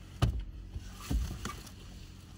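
Vehicle engines idling at a stop, broken by short sharp knocks: a loud one about a quarter second in, then two more about a second and a second and a half in.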